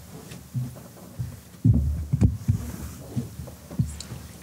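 A few dull, low thumps and bumps, the loudest cluster about two seconds in, over faint room noise.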